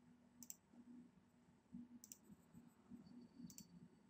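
Faint computer mouse clicks, three of them about a second and a half apart, over near-silent room tone.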